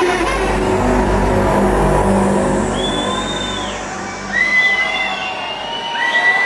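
Techno in a breakdown: the beat drops away and a sustained bass and synth chord run on as the highs are filtered off, the bass fading out near the end. From about three seconds in, piercing whistles from the crowd sound over it.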